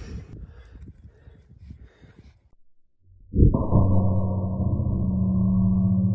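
Low wind rumble and handling noise, then a break. About three seconds in comes a deep, drawn-out boom that settles into a steady low ringing hum: the impact on the aluminium box target, slowed down with the slow-motion footage.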